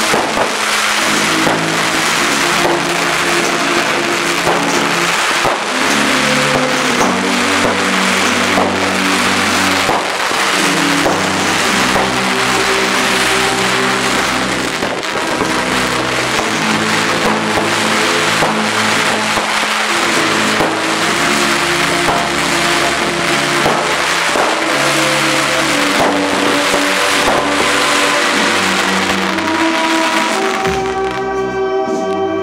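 A continuous barrage of daytime firework rockets, a dense unbroken crackling and rushing with no let-up, with music underneath.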